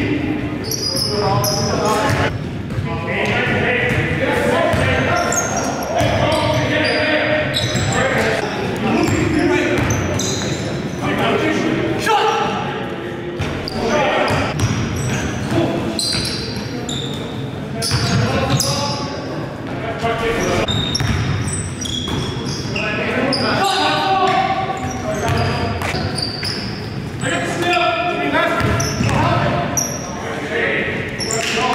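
Live sound of an indoor basketball game: a basketball bouncing on a hardwood gym floor among players' indistinct shouts and calls, echoing in a large hall.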